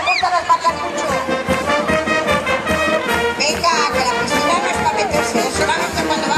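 Brass band music with a steady beat, with crowd voices and shouts over it.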